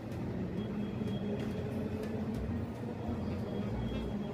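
Steady low rumble of background ambience inside a large church hall, with faint distant voices now and then.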